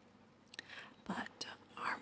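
Soft whispered speech.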